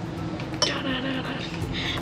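A metal spoon clinks once against a saucepan of melted chocolate, a little over half a second in, then scrapes softly as it scoops.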